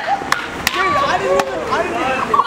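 A group of young men whooping and cheering, with four sharp hand slaps from high-fives ringing out over the voices in the first second and a half.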